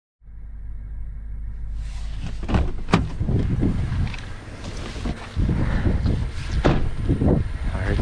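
Low rumble inside a pickup truck's cab, then a sharp click about three seconds in as the door is unlatched and opened, followed by gusty wind on the microphone with a few knocks.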